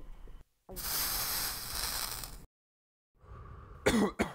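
A loud rushing hiss-like noise lasting about two seconds that cuts off abruptly, followed by quieter rustling noise and a sharp sound near the end.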